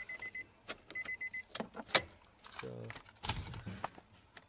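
Electronic beeper sounding two quick bursts of about five short high beeps each, a second apart, followed by a few sharp clicks, one loud.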